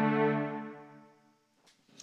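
Synthesizer string pad with a darkened tone, played from a mountain dulcimer through its 13-pin pickup, holding one chord that fades away by about a second and a half in.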